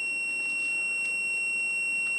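Digital multimeter's continuity buzzer sounding one steady, unbroken high tone. It shows that the frozen frost stat's bimetal switch is closed across the orange and white wires, as it should be when cold.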